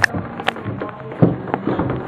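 Handling noise from a handheld camera: scattered short knocks and rubbing over a steady background noise.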